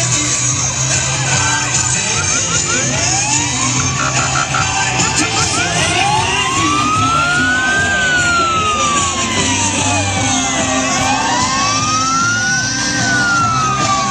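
A siren wailing in slow rising and falling sweeps, each rise or fall taking two to three seconds, after a few shorter sweeps and quick chirps in the first half. It sounds over loud parade music and noise.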